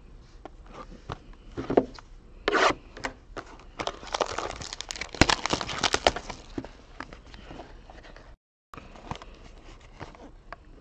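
Plastic shrink wrap being torn and peeled off a sealed trading-card box, crinkling and crackling in irregular bursts, loudest in the middle and settling to lighter handling of the box near the end.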